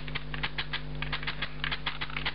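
Quick, irregular run of small clicks from a Sony Alpha 700 DSLR's control dial being turned to change the aperture, about eight clicks a second.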